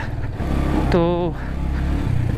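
Motorcycle engine running under load up a steep, rough dirt track. Its note grows louder and deeper about half a second in.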